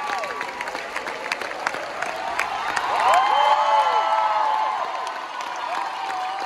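Theatre audience applauding. Several people cheer in high voices about three seconds in, the loudest moment.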